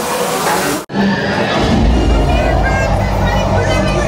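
Loud rushing of a waterfall, cut off abruptly about a second in. A steady low rumble with music and people talking follows.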